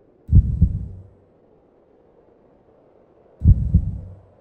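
Heartbeat sound effect: two slow, deep double beats (lub-dub), about three seconds apart.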